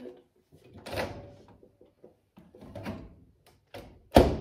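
A bowl being put into a built-in microwave and the microwave door being shut, heard as separate knocks about one second and about three seconds in. A few light clicks follow near the end.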